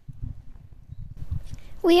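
Handling noise from a handheld microphone as it is gripped and lifted: irregular low thuds and rumble. A girl starts speaking near the end.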